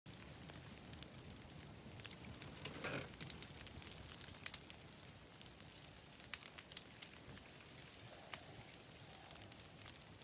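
Small campfire crackling faintly: scattered sharp pops and snaps over a soft hiss.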